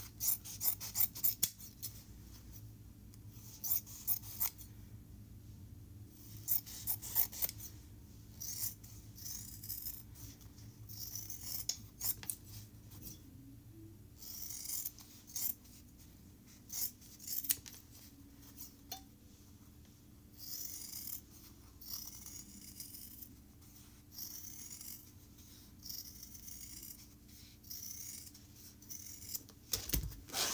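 Sewing scissors snipping through a stack of four layers of fabric along a traced pattern line, in quick runs of short cuts with pauses between.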